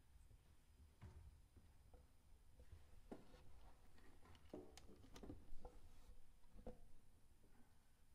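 Near silence with faint, scattered small clicks and taps, a few a second and busiest around the middle, with no sustained note.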